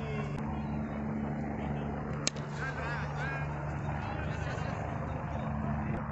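Steady low mechanical drone, like a distant engine, with a single sharp crack about two seconds in and faint high chirps soon after.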